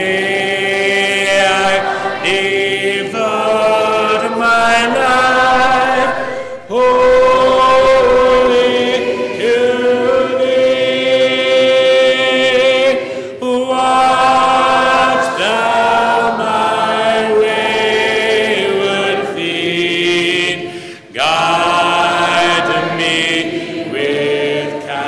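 Congregation singing a hymn unaccompanied, in long held notes, with short breaks between phrases about 7, 13 and 21 seconds in.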